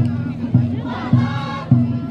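A crowd of marchers singing together to a steady low drumbeat, about three beats every two seconds.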